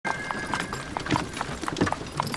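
Horse's hooves clip-clopping on stone paving at a walk as it pulls a cart, a steady run of sharp knocks about four to five a second.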